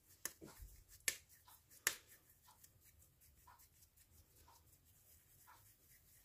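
Hands shaping a ball of puri dough between the palms, with three sharp slap-like clicks in the first two seconds.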